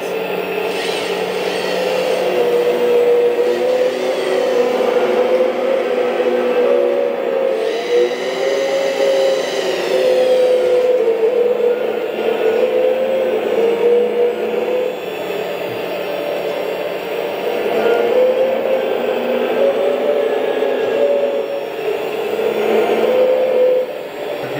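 Hydraulic pump of a Huina 1/14 K970 RC excavator running with a steady whine that wavers in pitch as the arm and plier attachment move under load. About eight seconds in, a higher whine joins for a couple of seconds, falling slightly in pitch.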